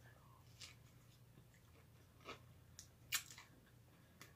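A person quietly chewing a mouthful of bread topped with lasagna and pomegranate seeds, with a few faint crunchy clicks, the clearest about three seconds in.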